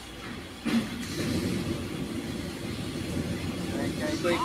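Diesel engine of a tractor-trailer truck running as it manoeuvres at low speed, a steady low engine noise that swells just under a second in. A short sharp knock comes just before it.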